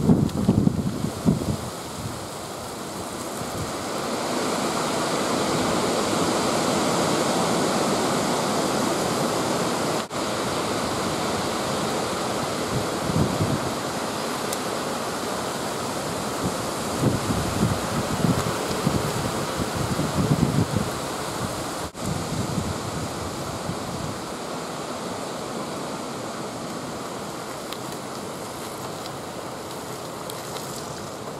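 Steady rushing wind, with low buffeting gusts on the microphone near the start, about halfway through and a few seconds later.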